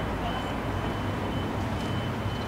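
Steady low rumble of outdoor town ambience, likely distant traffic, with a faint thin high tone held throughout.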